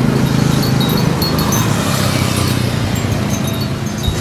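Steady roadside traffic noise with a low engine hum, and a few brief high-pitched tinkling notes scattered through it.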